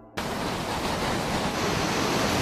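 Hurricane wind cuts in suddenly just after the start and keeps up as a loud, steady rushing roar.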